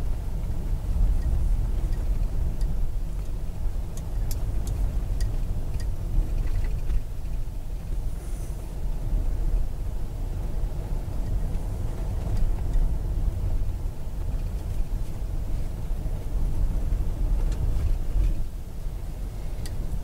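Steady low rumble of a car's engine and tyres heard from inside the cabin while it is driven slowly along a paved road, with a few faint ticks about four seconds in.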